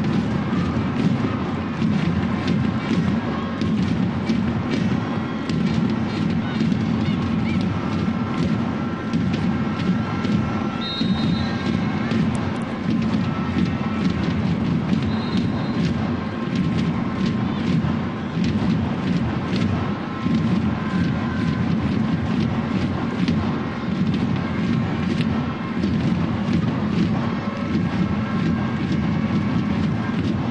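Large football stadium crowd: a steady, continuous roar of many voices with faint held tones from chanting or horns. There are two brief high tones near the middle.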